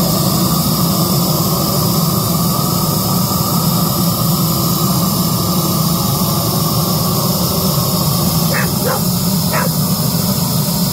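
Gas torch burning with a steady loud hiss as its flame blows onto wood logs in a grill's firebox to light them. Three brief sharp sounds come near the end.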